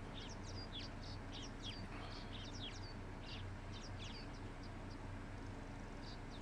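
Wild birds chirping, many short quick calls one after another, over a faint steady low hum.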